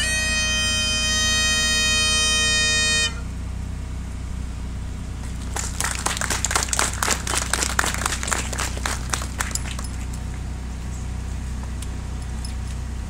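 Highland bagpipes holding the last note of a tune over the drones, then cutting off abruptly about three seconds in. A few seconds later comes a scattered round of clapping.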